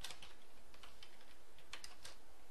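Computer keyboard typing: a scattering of light key clicks, with a quick cluster near the end.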